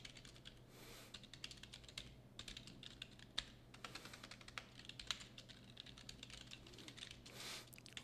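Faint typing on a computer keyboard: a run of irregular key clicks.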